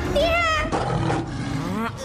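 Cartoon wolf-creature roar: a voiced, wavering snarl in the first half second, then a second call rising in pitch near the end.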